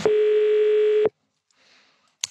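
Telephone ringback tone: one steady buzzy beep about a second long that then cuts off, the sign that the called line is ringing.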